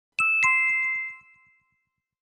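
Two-note descending chime sound effect: two bell-like dings about a quarter second apart, the second lower, ringing out and fading within about a second and a half.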